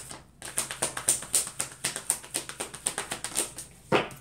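A deck of tarot cards being shuffled by hand: a quick, irregular run of light clicks and flicks as the cards slide and slap against each other, with one sharper knock near the end.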